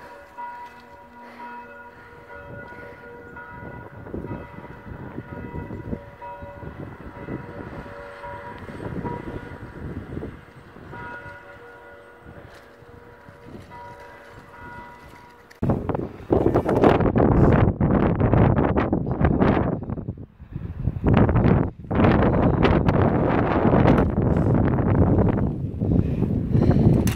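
Church bells ringing faintly, several overlapping tones swelling and fading for about the first fifteen seconds. Then loud wind noise suddenly buffets the microphone and takes over.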